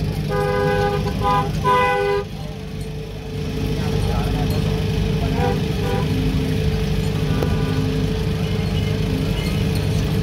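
A vehicle horn honking three times in quick succession in the first two seconds, a long blast, a short one and another long one, over a steady engine hum and crowd chatter.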